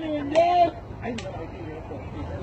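Speech only: a voice talking for under a second at the start, then quieter background with a faint click or two.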